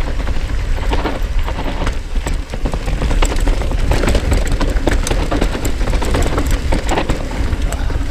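Mountain bike descending a dry dirt trail at speed: tyres rolling over the dirt, with the bike rattling and clicking over bumps on top of a steady low rumble.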